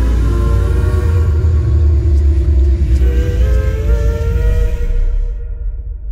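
Closing music of a horror film trailer: a deep, sustained bass rumble under held, layered drone tones that shift slightly in pitch about halfway through, fading out near the end.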